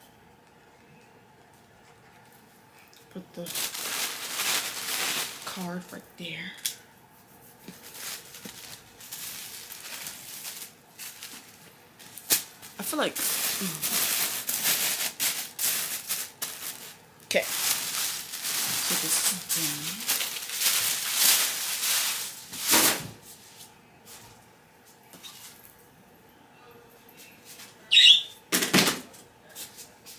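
Rustling and handling noise close to the microphone in three long bursts, the longest about five seconds, with quiet gaps between them and a couple of short sharp bursts near the end.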